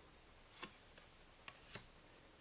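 Near silence broken by about four faint, short clicks of tarot cards being moved from the front of the hand-held deck to the back.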